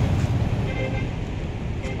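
Low rumble of passing road traffic that eases slightly over the two seconds.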